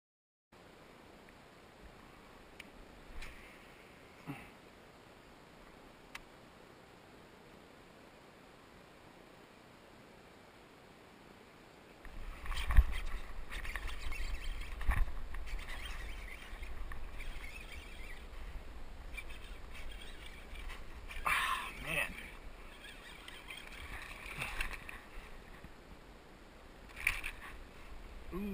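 Kayak fishing sounds: faint and steady for about twelve seconds, then a low rumble with scattered knocks and splashing as a small bass hooked on a hollow-body frog is brought up beside the kayak.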